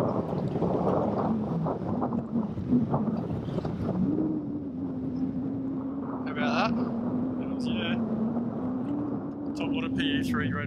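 Boat's outboard motor idling with a steady hum that steps up slightly in pitch about four seconds in, over wind noise on the microphone. Two short high warbling sounds come near the middle.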